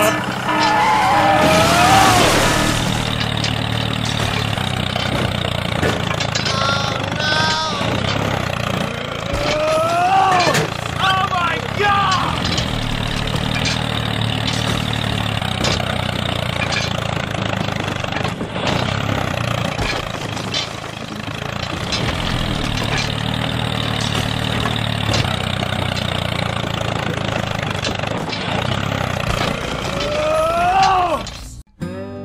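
Steady low engine drone of a miniature model tractor as it crawls over loose dirt and rocks. Brief high, rising-and-falling vocal exclamations come through several times: near the start, about seven seconds in, and again around ten to twelve seconds.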